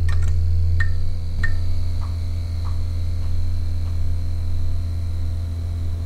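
Steady, loud low electrical hum, a neon-buzz sound effect. Over it come two sharp clicks about a second and a second and a half in, then fainter ticks about every half second that die away.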